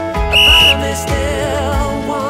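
Background pop song with a wavering singing voice over a beat. About a third of a second in, a single short, high, steady beep sounds over it: the workout timer's signal that one exercise interval has ended and the next begins.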